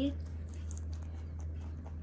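A rabbit chewing lettuce, faint crisp crunching over a steady low hum.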